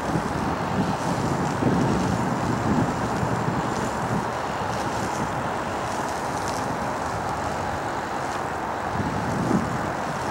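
Steady wind rumble on the camera microphone over a low, even outdoor background noise.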